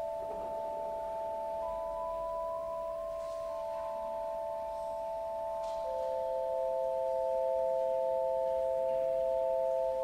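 Pipe organ playing slow, quiet sustained chords: several notes held steady for seconds at a time, with one note changing or coming in every second or two, and the sound swelling slightly in the second half.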